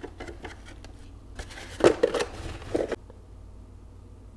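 Close handling noises during seed sowing: a few light clicks, then about a second and a half of sharp crackles and taps from the seed packet and plastic jug as seeds are tipped into a palm.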